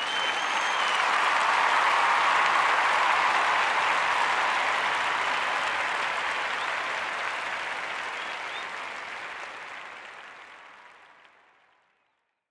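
Crowd applause that swells up, holds, and then slowly fades out.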